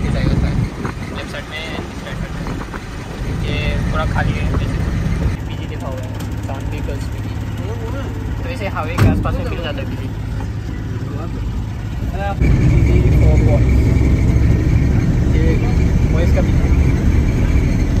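Engine and road noise inside the cabin of a Tata Magic shared van on the move, with faint voices in the background. A single knock comes about 9 seconds in, and about 12 seconds in the engine and road noise gets louder and a steady whine joins it.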